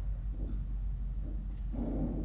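Steady low rumble of room noise on the microphone, with two faint soft sounds, one about half a second in and one near the end.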